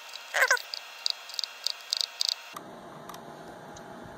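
Tactile push buttons on a DSO138 pocket oscilloscope clicking, about ten short, sharp clicks over two seconds as the timebase is stepped down, with a brief squeak about a third of a second in.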